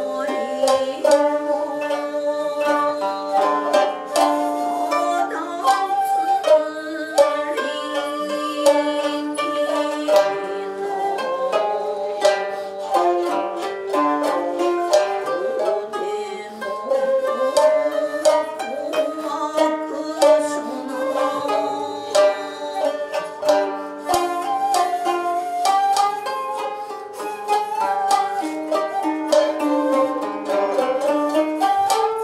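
Japanese sankyoku ensemble playing: koto and shamisen plucking quick notes over sustained, sometimes bending tones from a shakuhachi.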